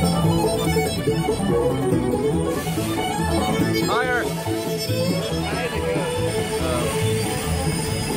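Instrumental background music with held notes over a steady beat.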